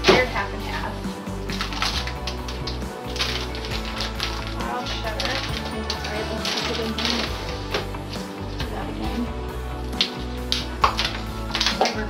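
Plastic food containers and packages clattering as they are handled and dropped into a kitchen trash can. There is a sharp knock right at the start and another cluster of knocks near the end, over background music.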